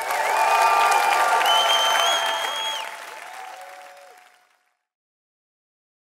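A studio audience applauding and cheering at the end of a song. The applause fades out over about four seconds.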